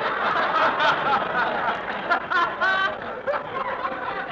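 A live studio audience laughing at a radio comedy gag. Many voices overlap, one laugh stands out clearly about two and a half seconds in, and the laughter thins a little near the end.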